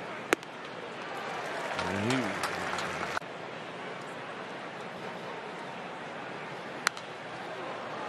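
Ballpark crowd murmur on a baseball broadcast, with two sharp cracks from the field, one just after the start and one near the end.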